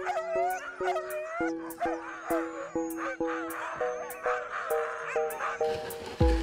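Harnessed sled huskies howling and yelping over background music, which has an even beat of notes about twice a second.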